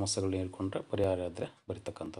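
A man speaking in Kannada in a steady narrating voice. Near the end, between phrases, come a few short sharp clicks.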